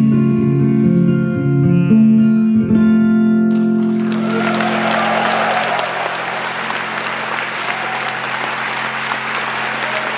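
Final notes of an acoustic guitar ringing out for the first three seconds or so, then an audience breaking into applause at about four seconds in and carrying on.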